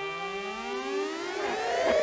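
Pop song intro: a held brass note fades out as a stack of electronic pitch sweeps takes over. Several tones glide upward while one glides down, growing louder as a build-up to the beat drop.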